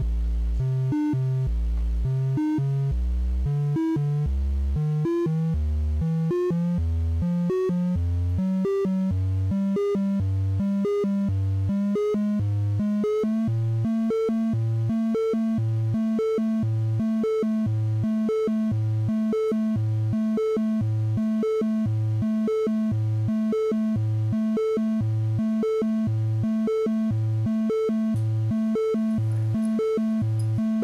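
Befaco Even analog VCO's triangle wave sounding a rapid repeating sequence of short, steady test notes that jump between pitches about an octave apart, as the tuning software steps it through its measurement range. Over the first several seconds the lowest note creeps upward in pitch as the VCO's tuning trimmer is turned to bring its volt-per-octave tracking into tune.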